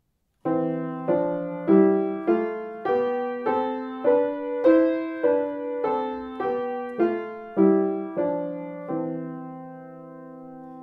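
Upright piano playing a C major scale with both hands in parallel sixths, the left hand starting on E and the right hand on C: fifteen even two-note steps rising an octave and coming back down, the last one left to ring.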